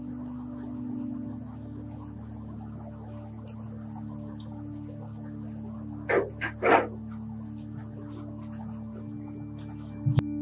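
A dog barks three times in quick succession a little past the middle, over a steady low background of music.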